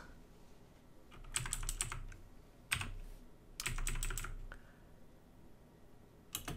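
Typing on a computer keyboard: three short runs of keystrokes with pauses between.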